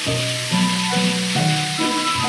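Steady hiss of gas spraying from a pressurised helium canister, under background music of short stepped notes.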